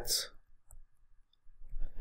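A man's voice trails off at the start, then a short pause with a few faint clicks before he draws breath and begins speaking again near the end.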